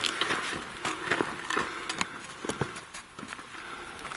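Footsteps on loose rock and gravel, an irregular run of short scuffs and clicks, a couple to the second.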